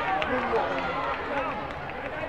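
Many voices overlapping in a large hall: spectators and coaches calling out at once, steady throughout.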